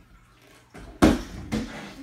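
Folding bike-ramp section with metal hinges set down on a wooden tabletop: a loud knock about a second in, with a lighter knock just before it and another about half a second after.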